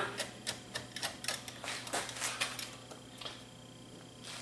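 Screwdriver backing a screw out inside a Panasonic SV-3500 DAT deck: a run of small, quick, irregular clicks that die away about three seconds in.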